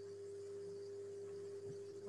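A faint, steady single-pitched tone with a low hum beneath it, ending near the end.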